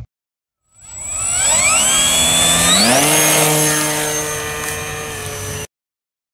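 A swelling electronic chord whose many voices glide in pitch over about two seconds and settle into one held chord with a high ringing tone. It then cuts off abruptly near the end.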